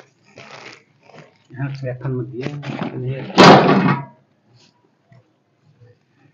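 Indistinct voice speaking low and unclearly, rising to a loud vocal outburst about three and a half seconds in.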